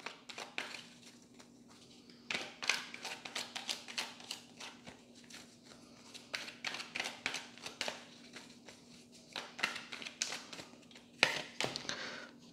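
A tarot deck being shuffled by hand: a run of quick, irregular card taps and slaps, with a faint steady hum underneath.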